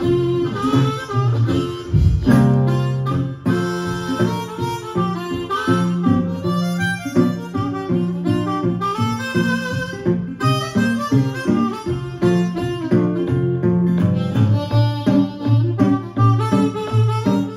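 Blues harmonica solo over a resonator guitar accompaniment, played live as an acoustic blues duo.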